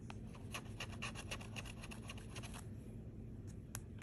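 The edge of a bottle opener scraping the scratch-off coating from a lottery ticket. It makes a quick run of short, faint scrapes, then a few single scrapes near the end.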